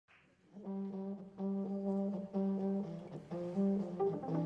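A low brass instrument playing a slow phrase of long held notes, with short breaks between them, starting about half a second in.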